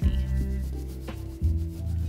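Wax crayon rubbing back and forth on paper, colouring in a patch, over background music with held bass notes.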